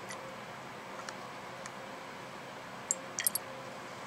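Steady room hum with a few faint, sharp ticks and a quick cluster of three or four light clicks about three seconds in.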